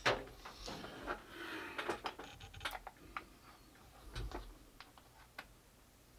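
Handling noise from a microphone and its stand mount being gripped and adjusted: irregular light clicks and knocks, with a dull thump about four seconds in, growing sparser toward the end.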